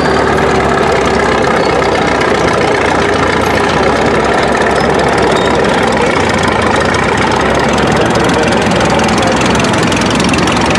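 Vintage tractor engines running steadily at low revs as a grey McCormick-Deering tractor drives slowly close by, with a second vintage tractor's engine behind it.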